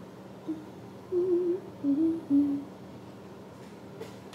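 A woman humming a short snatch of tune, a few brief notes with one wavering, starting about half a second in and stopping before the last second.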